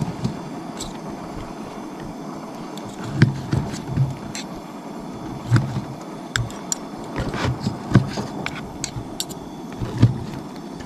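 Knife slicing cooked steak on a plastic cutting board: scattered clicks and dull knocks as the blade and fork meet the board, over a steady background noise.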